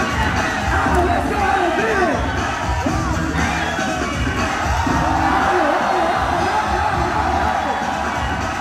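Dance music with a steady beat over a crowd cheering and whooping, the cheering growing louder about halfway through.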